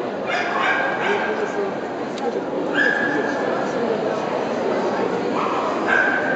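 Dogs whining and yipping in a few short, high-pitched calls over a steady murmur of crowd chatter.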